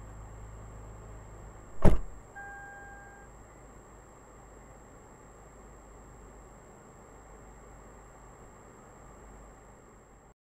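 Car collision: one loud impact about two seconds in, as the car carrying the dashcam strikes a car pulling out across its path. A short electronic beep follows, then only the faint hum of the stopped car.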